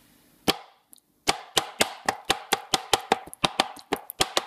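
Knife chopping on a plastic chopping board: one chop about half a second in, then a quick run of chops, about five a second, from just over a second in.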